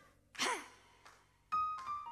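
A woman's short, breathy exclamation of "hey" into a microphone. About one and a half seconds in, a church keyboard comes in with held notes that step downward.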